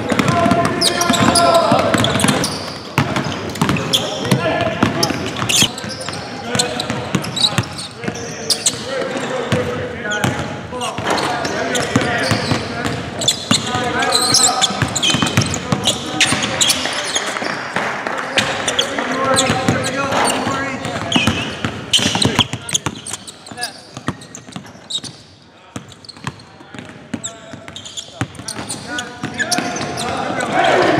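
Indistinct voices calling out over basketballs bouncing on a hardwood court, echoing in a large empty arena. It grows quieter for a few seconds near the end.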